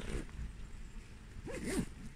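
Low rumble of a large hall during a pause in speech, with a short rustle close to the microphone about one and a half seconds in.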